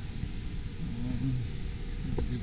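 Steady low rumbling ambience of a large airport terminal hall, with a brief faint voice about a second in.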